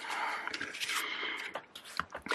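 Paper wrapper band being pulled off a stack of five-inch pre-cut fabric squares, a soft rustle of paper and cotton for about a second, then a few light taps as the stack is patted flat on the cutting mat.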